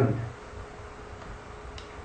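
A pause in the talk: low steady background noise with a faint hum, and a single faint click near the end.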